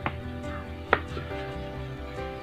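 Pencil drawing a line along a plastic ruler on paper, with two sharp taps about a second apart, the second one louder, over soft background music.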